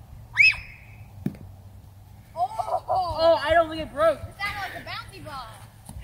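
Children's excited voices: a short high shout about half a second in, then a run of rising-and-falling calls and yells through the second half. A single dull thump sounds just over a second in.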